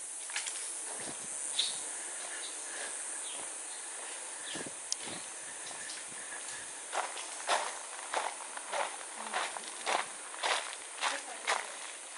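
Footsteps on concrete, a run of about two steps a second in the second half, over a steady high hiss.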